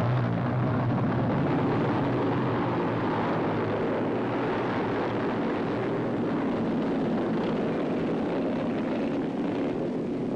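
A massed pack of 350cc racing motorcycles running together as the class leaves a mass start, a dense steady engine din that eases a little towards the end.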